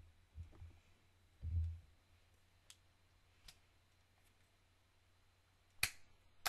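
Faint room tone with two soft low thumps in the first two seconds, then a few sharp clicks spaced about a second apart, the loudest near the end.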